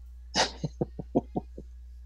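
A person's short laugh: a breathy burst, then a quick run of about six "ha" pulses that fade away.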